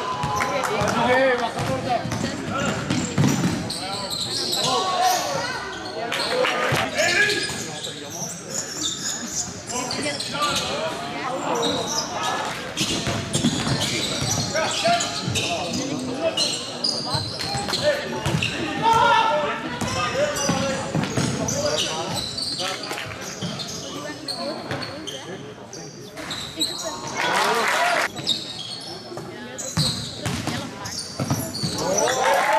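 Live basketball play in a gym: the ball bouncing on the court with scattered thuds, under players' and spectators' voices calling out. A louder burst of noise comes about 27 seconds in.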